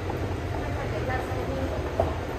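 A steady low rumble with faint, indistinct voices in the background.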